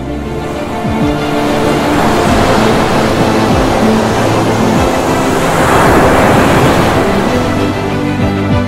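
Background music with long held notes over the rushing noise of surf breaking on rocks, which swells to its loudest about six seconds in.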